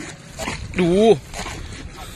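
A man's voice calls out one drawn-out, wavering word about a second in. Wooden paddles dip and splash in the river water around it.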